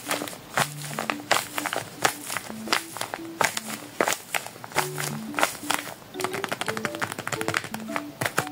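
Crinkling and crackling of a glossy paper squishy being squeezed and pressed between the hands, in irregular sharp crackles that come thick and fast near the end. Light background music of short plucked notes plays underneath.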